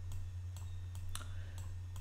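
A handful of sharp computer mouse clicks, the loudest a little past a second in, over a low steady hum.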